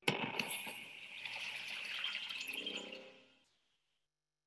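Logo sting sound effect for a film company's end card. It starts suddenly with a dense flurry of small clicks and a bright hiss, holds for about three seconds with a few low tones coming in near the end, and fades out about three and a half seconds in.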